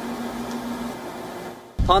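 Steady indoor room tone, a hiss with a low steady hum that stops about halfway through, then fades. Near the end it cuts abruptly to a man speaking outdoors.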